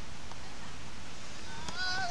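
Steady rushing background noise on an open beach court. Near the end a person lets out a long, drawn-out shout that rises in pitch.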